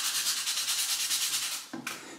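Sandpaper rubbed by hand in quick short strokes, about six or seven a second, over a painted iron heat-sink plate, scraping the paint off down to bare metal. The rubbing stops shortly before the end, followed by a single light click.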